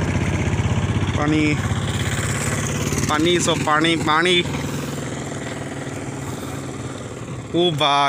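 A motorcycle engine idling close by with a steady, fast beat, fading away over the second half. Short bits of speech come over it.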